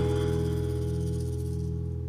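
Live band's final chord of the song ringing out: held bass and chord tones sustaining and slowly fading away after the last hit.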